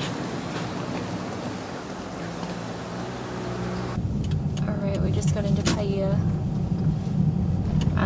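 A car driving, heard from inside the cabin: a steady rushing hiss at first, then about halfway through a lower, steady engine and tyre rumble. A few short voice-like sounds are heard over the rumble.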